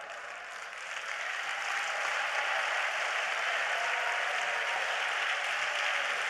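Congregation applauding, building up over the first second or two and then holding steady.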